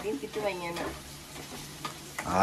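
Wooden spatula stirring food that is sizzling as it fries in a pan. A woman's voice is heard briefly in the first second.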